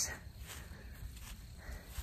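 Quiet outdoor ambience: a steady low rumble of wind on the microphone over a faint hiss.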